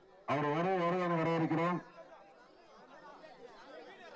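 A man's voice announcing into a microphone, one long drawn-out call lasting about a second and a half, followed by faint crowd chatter.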